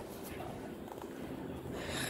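Low background noise with a short breath near the end.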